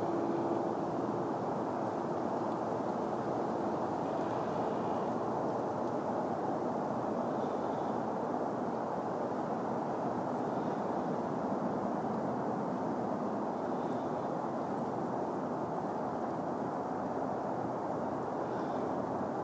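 Steady, even outdoor background noise with no distinct events; a faint steady hum fades out in the first few seconds.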